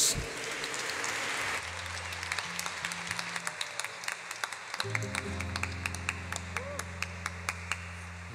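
A congregation applauding in a church. The applause thins after about a second and a half into scattered, rhythmic hand claps. Under the claps, low sustained chords of instrumental music begin and swell up from about five seconds in.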